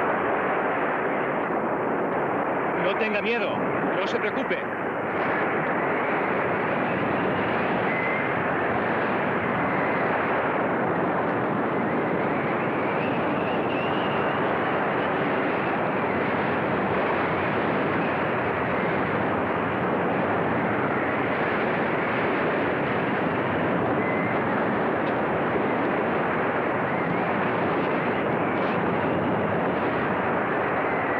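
Steady rushing noise of gale-force wind and heavy sea, a storm sound effect on an old film soundtrack that has no treble. A brief shout-like voice rises above it about three seconds in.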